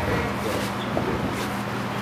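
Steady low hum under a wash of background noise, with a few faint knocks.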